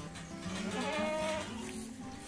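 A calf's faint bleating call, lasting under a second, heard over quiet background music.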